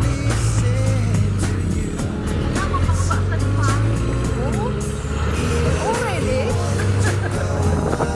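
A vehicle's engine running steadily while driving, with music playing over it and light rattling from the ride.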